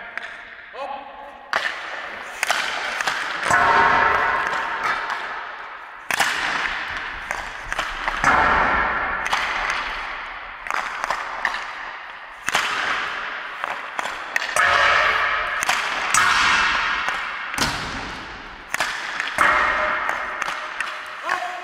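Ice hockey shots from a standing position: several sharp cracks of stick on puck and puck on boards or net, a few seconds apart, each ringing on in the long echo of an indoor ice arena.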